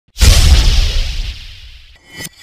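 Intro logo sound effect: a sudden whoosh with a deep boom that hits just after the start and fades away over about a second and a half.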